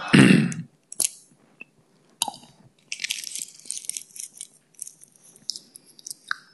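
The end of a chanted note fading out, then small mouth clicks and soft breathing close to a headset microphone, with sharp clicks about one and two seconds in and a breathy hiss in the second half.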